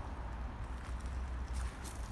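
Low wind rumble on the microphone, with a few faint footsteps crunching on gravel late on.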